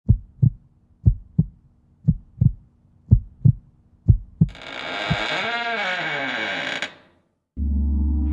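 Heartbeat sound effect: paired low thumps, lub-dub, about once a second. After about four seconds it gives way to a swelling sustained effect with a sweep that rises and falls, which cuts off; a spooky music track with a steady low drone begins near the end.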